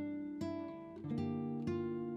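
Background music: an acoustic guitar plucking notes that start about every half second and ring on over one another.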